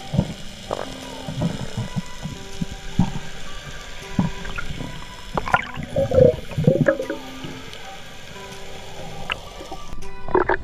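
Muffled underwater sound from a camera housing: scattered knocks and gurgling water, loudest around the middle, under soft background music with held notes.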